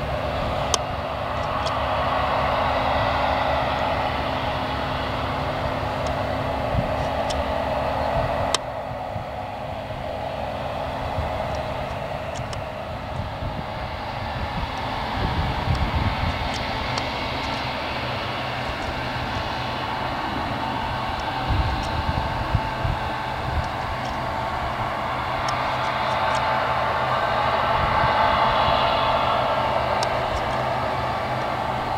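Diesel engine of a John Deere tractor running steadily as it pulls a loaded grain trailer. About a third of the way in the sound cuts suddenly to a New Holland combine harvester working: engine and threshing machinery running steadily, with a few sharp clicks.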